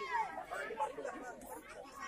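Crowd of spectators chattering, many voices talking and calling out over one another.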